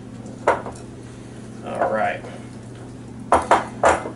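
Spatula knocking and scraping against a glass mixing bowl while thick cake batter is stirred: one sharp clink about half a second in, then three quick clinks near the end.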